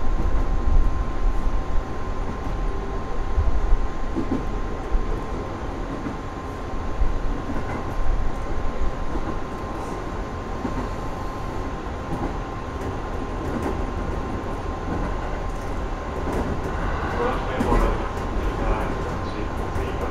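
JR East 415 series electric multiple unit running along the track, heard from inside its front car: a steady rumble of wheels on rail with a faint steady high tone. Near the end comes a short spell of higher ringing sound as the train passes a level crossing, most likely the crossing's warning bell.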